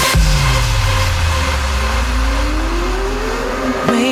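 House-music mix at a breakdown: the drums stop, a deep bass tone slides down in pitch, and a synth sweep rises steadily for about three and a half seconds as a build-up before the beat comes back in.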